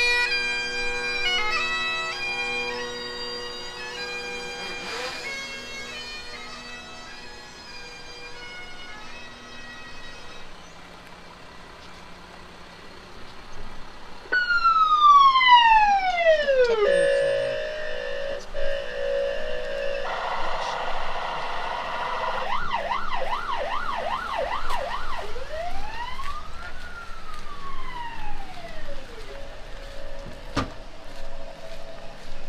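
Bagpipe-like sustained music dies away over the first ten seconds. About halfway through, an electronic siren sounds: a loud falling whine, a short steady tone, a few seconds of fast warbling yelp, then a slow rising-and-falling wail near the end.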